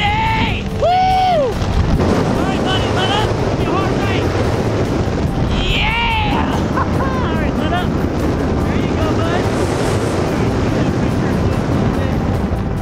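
Loud wind rushing over the microphone while a tandem parachute canopy spirals in a hard left turn. A rising-and-falling yell comes about a second in and another about six seconds in.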